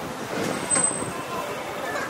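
City street traffic noise from passing cars and scooters, with a brief high-pitched squeak a little under a second in.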